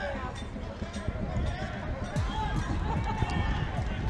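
Distant, indistinct shouting from players on a rugby pitch as a tackle goes in, over a steady low rumble.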